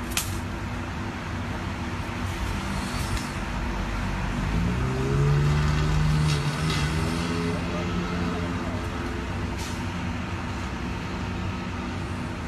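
Motor vehicle engine running, its pitch rising about four and a half seconds in and holding for a few seconds before fading back into a steady low hum. A sharp click comes right at the start.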